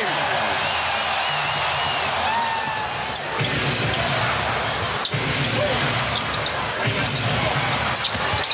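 Basketball arena crowd noise, a steady dense din, with a ball bouncing on the hardwood and a sharp knock about five seconds in.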